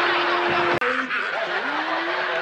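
Sitcom studio audience laughing over a held tone, cut off abruptly by an edit just under a second in; after the cut, a pitched sound that slides up and down.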